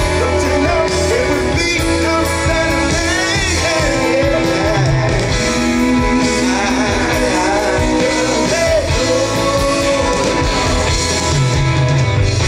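A live band playing a song with singing: fiddle, electric guitar, keyboards, drums and banjo together, the music dense and steady throughout.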